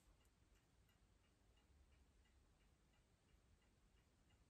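Near silence: quiet room tone with a faint clock ticking steadily.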